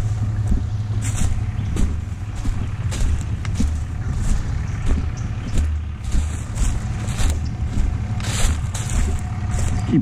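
Footsteps crunching through dry leaf litter on a woodland floor at a walking pace, about one and a half steps a second, over a steady low rumble.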